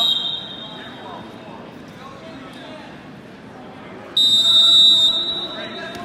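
Wrestling referee's whistle: a short blast at the start, then a loud, steady, high blast lasting over a second about four seconds in, the signals that stop and restart the action.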